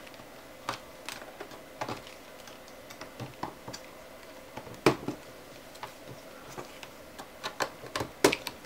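Irregular light clicks and taps of a thin sheet-metal frame being pried and unclipped from the edge of an LCD panel with a small hand tool, with one sharper click about five seconds in.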